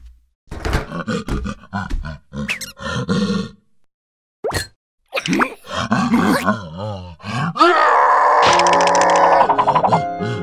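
Cartoon sound effects and comic gibberish vocalizations from animated larva characters: a run of short grunts and cries, a sharp single hit about halfway, wavering wails, then a louder dense sustained stretch over the last two seconds.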